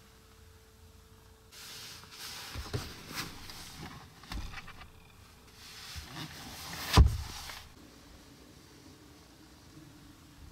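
Rustling and small clicks of hands handling a car's rear-seat trim, then the rear centre armrest being moved, with one loud thump about two-thirds of the way in.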